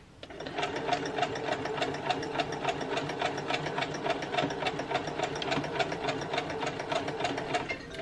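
Electronic sewing machine running a straight stay stitch: an even, rapid run of needle strokes that starts a moment in and stops just before the end.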